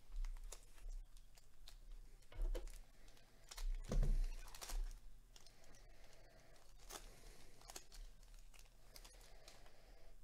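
Foil wrapper of a trading-card pack crinkling and tearing as it is ripped open, with irregular crackles that are loudest a few seconds in. Then the cards are slid out and shuffled in the hands.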